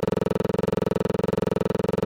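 Outro music: a steady synthesizer chord with a rapid, even flutter, holding one pitch throughout.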